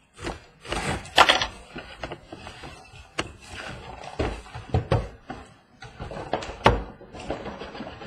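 A cardboard shipping case being opened by hand: packing tape slit and torn with a loud rip about a second in, cardboard flaps rustling, then several dull thuds and knocks as sealed boxes are lifted out and set down on a table.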